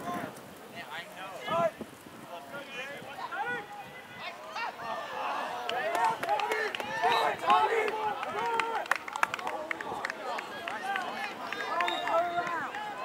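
Distant overlapping shouts and calls from players, coaches and spectators on a lacrosse field, sparse at first and growing busier and louder about halfway through, with a few sharp clicks in the second half.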